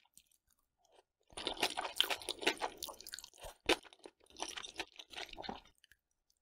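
Close-miked chewing of sauce-coated mushrooms, a wet crunch made of many small clicks. It starts after about a second of quiet, has one sharper click near the middle, and comes in a second run of chewing before stopping near the end.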